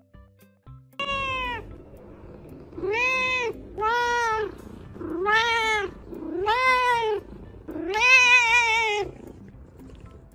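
A cat meowing six times in a row over background music. Each meow rises and falls in pitch, and the last one is the longest and wavers.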